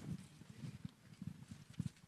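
Footsteps on a hollow stage floor: a person walking, with irregular dull knocks several a second.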